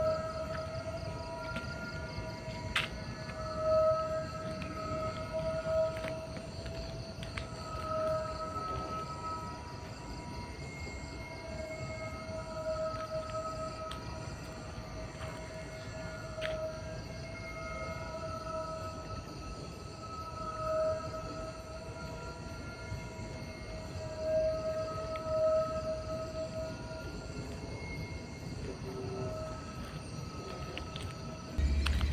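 Night ambience of insects chirping steadily, over a drawn-out tone that swells and fades every second or two. There are a few faint clicks.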